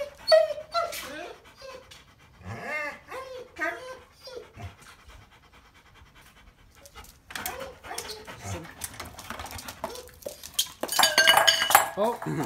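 Dog whining in short cries that rise and fall in pitch, once at the start and again a few seconds in, with panting between. A louder burst of noise starts about a second before the end.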